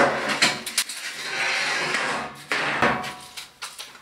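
Square steel tubing knocking and clanking against the workbench as it is handled: a few sharp knocks, a longer scrape of metal sliding across the bench in the middle, then more knocks.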